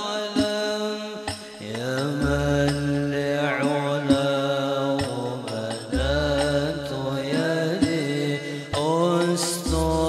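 Banjari hadrah music: a man sings an Arabic devotional sholawat melody over frame drums (terbang) played with sharp slaps, and a deep drum note sounds three times, about every four seconds.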